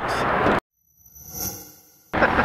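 Outdoor background noise cuts off abruptly about half a second in. After a moment of silence, a faint edit-transition sound effect swells up and fades away.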